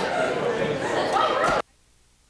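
People's voices talking, cutting off abruptly about one and a half seconds in, leaving near silence.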